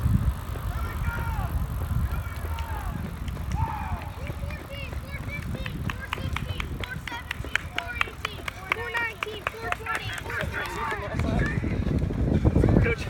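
Low rumble of wind and movement on a microphone travelling alongside runners on a track, with quick, fairly regular clicks of footfalls in the middle and short high chirps over it.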